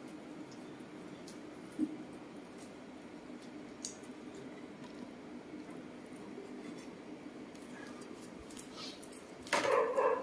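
Quiet room with a steady low hum and a few faint, light clicks and knocks, the clearest about two seconds in and near four seconds. A loud voice-like sound starts just before the end.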